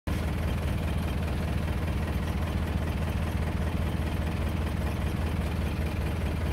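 Jeep engine idling steadily, heard from inside the open-sided vehicle.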